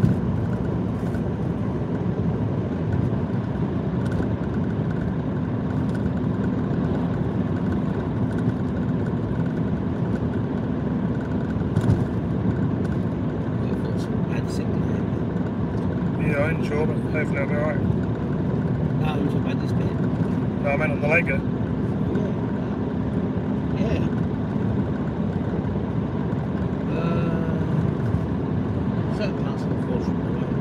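Steady road and engine noise heard from inside a moving car's cabin, with a few brief snatches of voice about halfway through.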